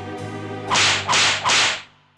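Three quick cartoon swish sound effects in quick succession, each starting sharply and trailing off as a hiss, over background music.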